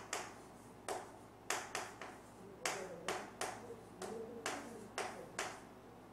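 Chalk striking and scraping on a chalkboard as characters are written by hand, a sharp click with each stroke, about ten at an uneven pace.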